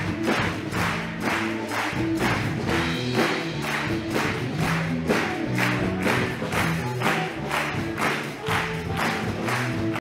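A cappella choir singing held, layered chords while an audience claps in time, about two claps a second.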